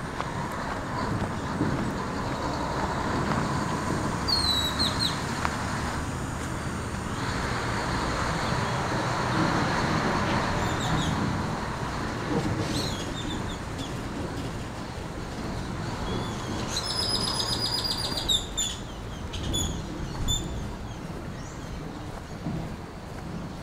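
Birds calling over steady outdoor background noise: a few short, high, falling chirps about four seconds in, then a rapid high trill near the end followed by several short calls.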